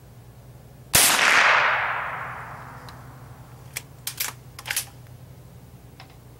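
A single shot from a Henry lever-action .22LR rifle, one sharp report about a second in that dies away over about two seconds. Near the end comes a quick run of short metallic clicks as the lever is worked to eject the case and chamber the next round.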